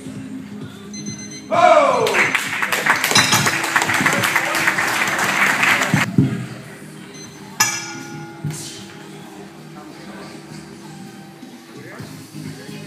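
Ringside crowd breaking into a sudden outburst of shouting and cheering about a second and a half in, opening with a falling shout and running for about four seconds before dying away, over steady background music.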